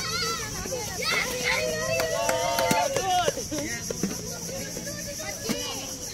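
A group of adults and children calling out and talking over each other, loudest in the first half, with a steady high-pitched buzz underneath.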